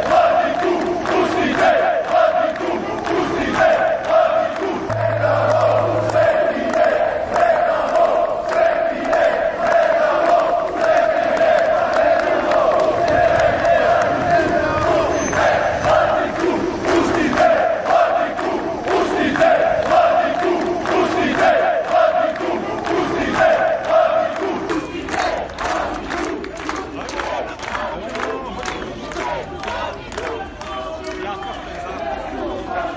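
A large crowd of marchers chanting together in a loud, sustained unison. The chant fades out about twenty-five seconds in.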